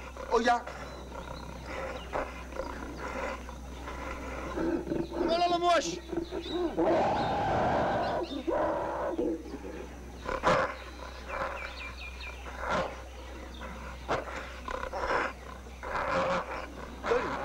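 Film sound effect of an angry gorilla crying out, with a short rising call about five seconds in and a long, loud cry about seven seconds in. Men's shouts and a couple of sharp knocks are heard around it.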